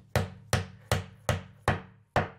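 Hammer tapping a screw through the holes of a welded steel shelf bracket to mark the plastered wall for drilling: five even, sharp strikes, about two and a half a second, each ringing briefly.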